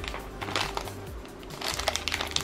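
Plastic blind-bag wrapper crinkling in the hands, a scatter of light crackles that grows busier near the end, over quiet background music.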